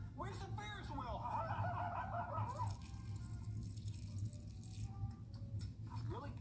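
A person's voice making a high, wavering, wordless sound for about the first two and a half seconds, over a low steady hum; after that only the hum and faint small sounds.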